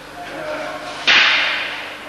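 Wooden aikido practice weapons striking together: a single loud, sharp crack about a second in, with a tail that dies away over most of a second.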